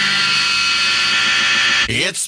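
Noise interlude on a powerviolence record: steady hiss with long held high tones like amplifier feedback, breaking off near the end.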